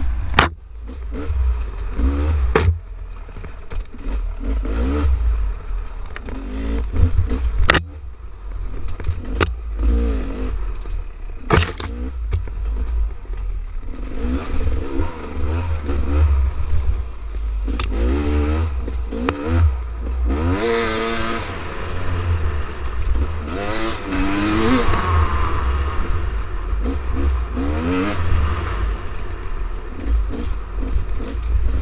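Dirt bike engine revving up and down as it is ridden along a trail, with wind buffeting the microphone. Several sharp knocks come through, most of them in the first dozen seconds.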